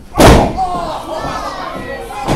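A wrestler's body landing on the wrestling ring's mat: one loud slam about a quarter second in. Voices follow.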